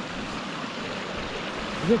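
Water spilling over a beaver dam with a drop of about half a metre: a steady, even rush of flowing water.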